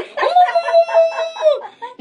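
A boy's long, drawn-out crying wail, held on one pitch and wavering in loudness for about a second and a half, then falling away.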